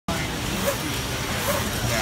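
Steady, even machinery noise of an automated apple tray-filling line and conveyor, with faint voices in the background.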